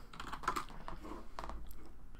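Irregular, fairly quiet keystrokes and clicks on a computer keyboard.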